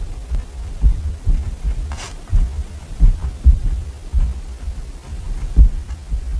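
A pen writing on a paper diary page on a wooden desk, heard very close up as an irregular run of soft, low taps and knocks from the strokes, with one brief scratchier sound about two seconds in.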